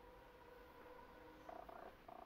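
Near silence: a faint steady hum, joined about one and a half seconds in by a faint pulsing tone.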